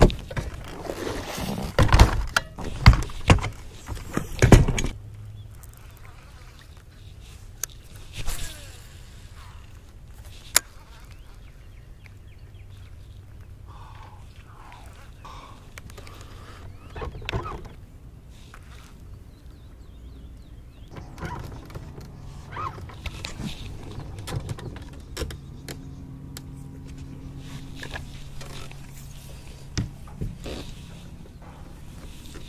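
Fishing gear being handled on a bass boat: several loud knocks and thumps in the first few seconds, then a steady low hum with scattered clicks and ticks.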